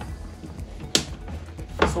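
Two sharp plastic clicks, about a second in and near the end, as a kayak's seat back and its bungee strap are handled and settled into place.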